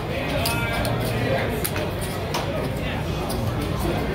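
Casino floor background of indistinct voices and music, with a few sharp clicks of casino chips as the dealer picks up a folded bet.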